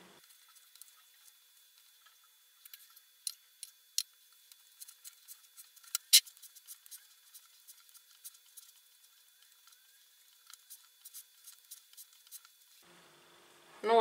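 Faint, scattered squelches and clicks of hands kneading stiff shortbread dough in a glass bowl, with one sharper click about six seconds in.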